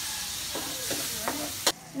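Liquid poured into a hot wok of sautéed garlic and onion, sizzling with a loud hiss that fades as it goes on; the liquid is the leftover soda from steaming the crab. A sharp click comes near the end.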